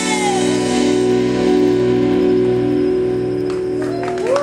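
Live band holding the final chord of a song: electric guitars, bass and keyboard sustaining one steady chord with a slow pulse, after the singer's last note trails off at the very start.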